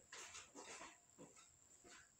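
Faint footsteps of a person walking away, about two steps a second, growing fainter.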